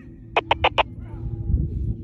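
Four quick beeps in a row from a Baofeng BF-F8HP handheld radio, about a third of a second in, counted as a four-beep reply; a low rumble follows near the end.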